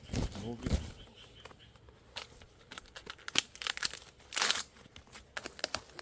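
Leaves and plant stems rustling and crackling in irregular bursts as undergrowth is pushed through and handled, with one louder crackling burst a little past the middle.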